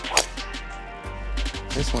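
A golf driver striking the ball off the tee: one sharp, loud crack about a fifth of a second in, over background music.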